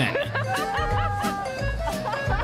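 People laughing over background music.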